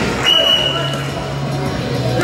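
Background voices in a sports hall during a karate sparring bout, over a steady low hum. A thin high steady tone sounds briefly, lasting under a second, just after the start.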